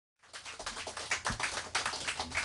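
A small audience clapping. The irregular, overlapping claps begin about a quarter of a second in.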